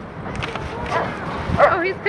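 Dogs barking and crying out during rough play-wrestling: a few short, pitched barks, the loudest near the end.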